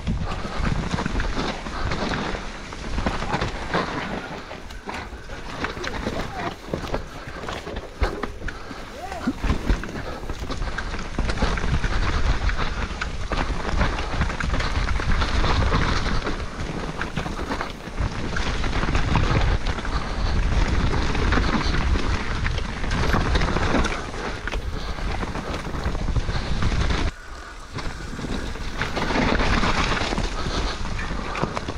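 Mountain bike riding down a rough, stony trail, heard close up on an action camera: a continuous rumble and rattle of tyres over loose rock and of the bike's chain and frame, with wind on the microphone.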